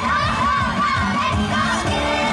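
Upbeat pop song with a steady beat, several young female voices singing and shouting together over it.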